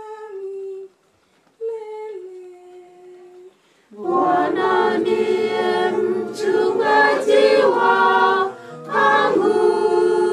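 A single voice sings two short lines alone, then about four seconds in a congregation joins in with loud unaccompanied group singing of a hymn.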